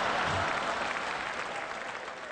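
Sitcom-style studio audience applause, fading steadily away.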